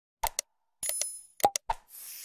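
Mouse-click sound effects from a subscribe-button animation: two pairs of short clicks, with a brief bell ding between them about a second in. A whoosh starts right at the end.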